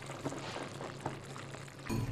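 Jajangmyeon (udon noodles in thick black bean sauce) being stirred with wooden chopsticks in a ceramic bowl: a quiet, wet, slurpy squelching of sauce-coated noodles.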